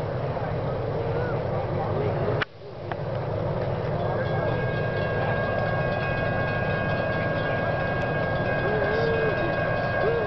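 CSX freight train approaching: the steady low rumble of its diesel locomotives, with a thin steady tone joining in about four seconds in. The sound cuts out briefly about two and a half seconds in.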